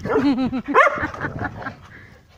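Dogs barking: a quick string of short, yelping barks in the first second, then quieter. The dogs are agitated and barking at their owner.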